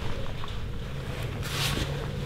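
Soft rustling and a few light knocks from a Veto Pro Pac MB2 fabric tool bag being handled, with a brief louder rustle near the end, over a steady low hum.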